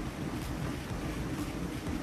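Wind on the microphone: a steady low noise with no other clear sound.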